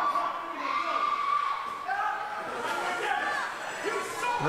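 Wrestling crowd in a hall shouting and calling out, with several high-pitched voices drawn out over the background crowd noise.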